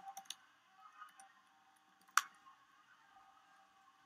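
A few faint computer keyboard keystrokes, with one sharper key click about two seconds in.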